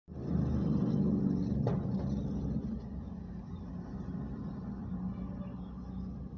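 Steady low rumble of a car cabin, louder over the first two or three seconds, with a single sharp click about a second and a half in.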